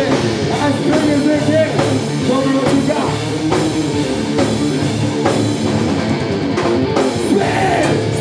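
Live metal band playing loud: distorted electric guitar over a drum kit with crashing cymbals, steady throughout.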